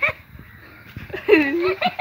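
A few short, high-pitched cries with wavering pitch, the loudest about a second and a half in.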